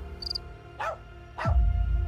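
A dog barking twice, about half a second apart, each bark short and falling in pitch, with a couple of faint high chirps near the start and a low steady rumble that swells after the second bark.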